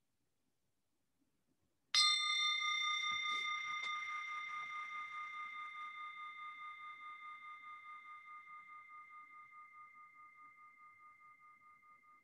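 A meditation bell struck once about two seconds in, then ringing on with a clear tone that slowly fades, pulsing gently as it dies away. It is sounded as a focus for listeners to follow at the start of meditation.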